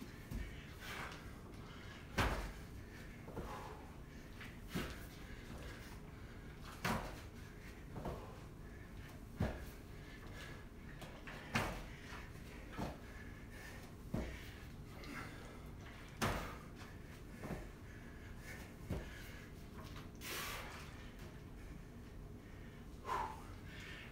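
A person doing repeated squat thrusts on a gym floor: a steady series of about ten thumps, one every two seconds or so, as the feet land, with hard breathing between them.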